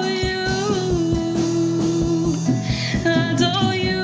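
A woman singing a slow worship song, holding long notes, accompanied by strummed acoustic guitar and a drum kit.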